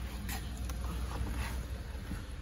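A few faint clicks and rustles from handling close to the open car door, over a steady low hum.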